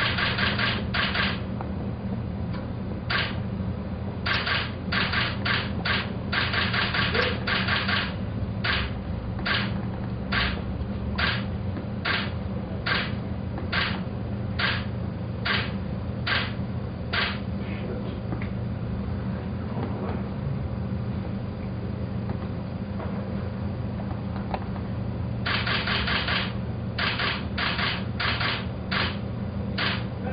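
Still-camera shutters firing, in rapid bursts of clicks and single clicks spaced under a second apart, over a steady low hum.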